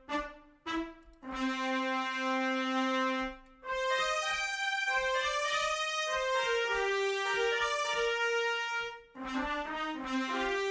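Sampled trumpets from Soundiron's Hyperion Brass library: a short note, then a long held note, then several overlapping held notes forming chords, with one voice stepping down toward the end.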